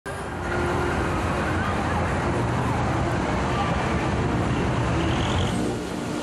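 City street ambience: a steady hum of road traffic with faint voices of people in the distance.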